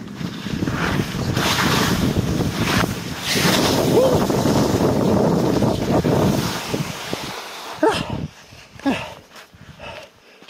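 Skis scraping and slashing through soft spring-snow moguls, a loud rush of snow noise in uneven surges mixed with wind on the microphone. It dies away near the end as the skier stops, and two short breaths or gasps are heard.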